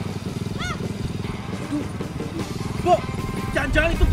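Motorcycle engine running steadily under way, with short voiced exclamations over it near the end.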